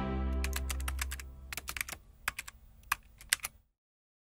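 Logo sting sound design: a low music chord fades away while a quick, uneven run of computer-keyboard typing clicks plays as the tagline is typed on. The clicks stop abruptly just before the end.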